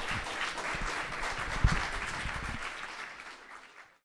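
Audience applauding, fading out toward the end, with one low thump about one and a half seconds in.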